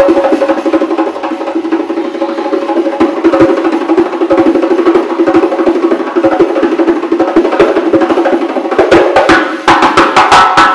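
Uzbek doyra frame drum played solo in a fast, unbroken roll of finger strokes, with occasional deep bass strokes and louder, sharper accents near the end.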